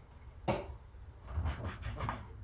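Hands handling biscuit dough and utensils on a kitchen countertop: one sharp knock about half a second in, then a few softer knocks and rubbing.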